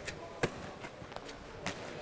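Sharp smacks of a handball in play, one clear impact about half a second in and two or three fainter ones later.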